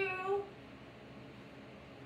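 The end of a cat's meow, one steady pitched call that fades out about half a second in, followed by faint low room hum.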